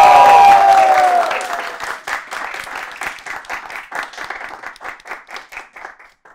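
A small group clapping hands in applause, with several voices cheering together over it at the start. The clapping thins out into scattered claps and dies away near the end.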